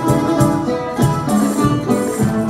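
Traditional Canarian folk music for the berlina dance: an instrumental passage of string instruments with a steady, evenly repeating strummed beat.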